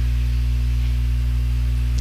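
Steady low electrical hum, mains-type buzz in the recording, with a faint hiss over it.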